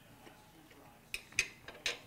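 A metal fork clicking against a plate: three short, sharp clicks a little past the middle and near the end, the middle one loudest.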